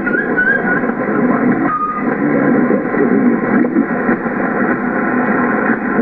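Yaesu HF transceiver's speaker receiving single sideband: steady band noise and hiss, cut off above the voice range, with faint garbled voices under it. A wavering heterodyne whistle sounds in the first second, and a short steady tone about two seconds in.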